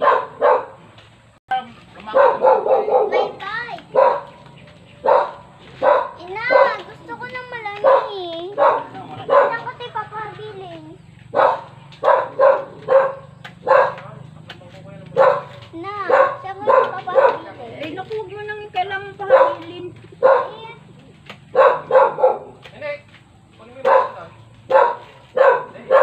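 A dog barking over and over in short, repeated barks, with a few whining, wavering calls in the middle.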